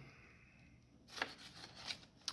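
Faint rustling of a thin clear plastic packaging bag being handled, with two brief crinkles in the second half.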